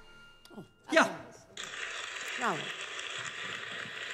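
Grand piano's final chord dying away, then a short burst of applause that starts about a second and a half in and cuts off abruptly after about three seconds.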